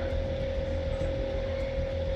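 Steady background hum with a faint, constant high tone, the recording's own noise between spoken phrases.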